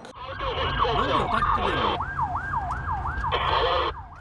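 Emergency vehicle sirens in city traffic. A fast yelping siren sweeps up and down about four times a second, and another, lower siren overlaps it for the first two seconds, over a steady rumble of traffic.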